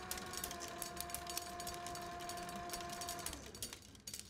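A reel machine running: a steady whirring hum with rapid clicking. The hum dies away about three and a half seconds in, leaving faint clicks.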